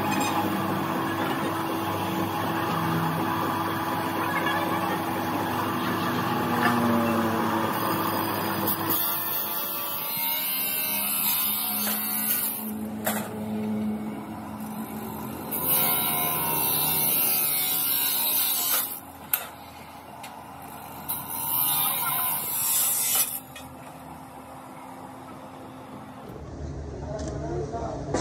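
Abrasive chop saw cutting steel tubing: several loud cuts lasting two to three seconds each, with quieter pauses between the last ones.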